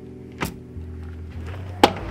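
Two clicks from a balcony door's lever handle and latch, a small one about half a second in and a sharper, louder one near the end, over background music.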